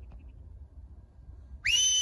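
A single whistle blown as a signal to a working dog, coming in near the end: one loud note that glides up, holds and then falls away, lasting under a second.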